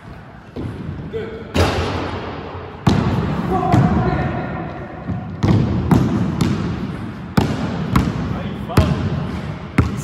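A basketball bouncing on a sports-hall court: about a dozen sharp thuds at irregular intervals, each ringing on in the hall's echo.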